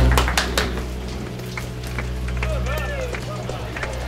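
Film soundtrack: a low steady drone with scattered sharp clicks and taps, and a short wavering voice-like sound about two and a half seconds in.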